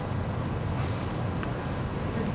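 Steady low room hum, with a brief faint hiss about a second in.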